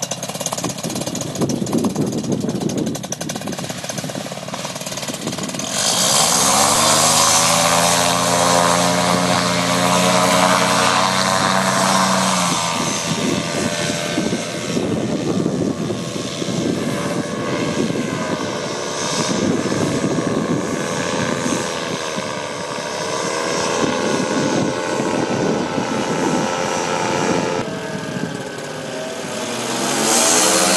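Paramotor engine and propeller: a rough, rattling idle, then opened up to full power about six seconds in for the takeoff. It keeps running at high revs, its pitch shifting and bending as the machine climbs away and passes overhead.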